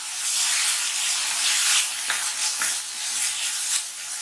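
Sliced onions and green chillies sizzling in a non-stick pan, stirred with a wooden spatula that makes repeated scraping strokes through the hiss of the frying.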